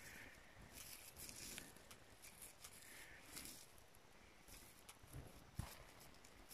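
Near silence: faint rustling of gloved fingers handling a small coin, with two soft knocks near the end.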